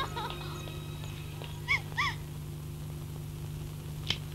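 Two short chirping calls, each rising and falling in pitch, about a third of a second apart, over the steady hum of an old film soundtrack. The tail of a music cue fades out at the very start.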